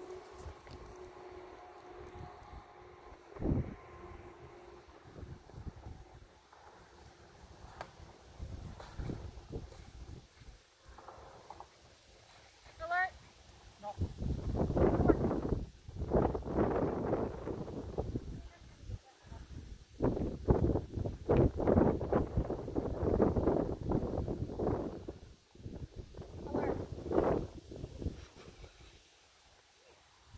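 Indistinct talking by people, too unclear for words to be made out, coming in patches through the second half; the first half is quieter.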